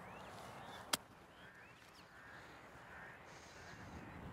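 A golf club strikes the ball from the grass in a flop shot: one short sharp click about a second in. Faint bird calls follow.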